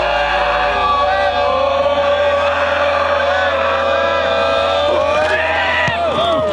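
A long, steady held voice sound with a few speech-like rises near the end, over a low steady hum.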